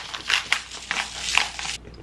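Seasoning shaker bottle shaken over raw chicken breasts, a run of quick rattling shakes about three a second that stops near the end.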